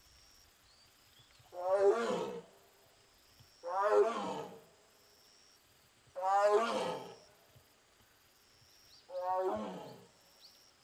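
Amur (Korean) tiger calling four times, each call about a second long and a couple of seconds apart, the last one fainter. The calls are most likely the tiger crying out after being separated from its sibling.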